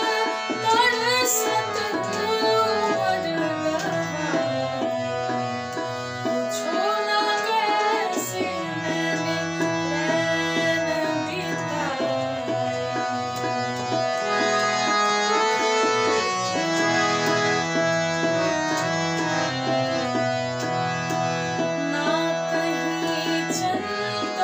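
A woman singing a Hindi film song set in raga Ahir Bhairav over a recorded instrumental accompaniment with a steady drum rhythm. Her voice is clearest in the first half; the middle is mostly held instrumental notes.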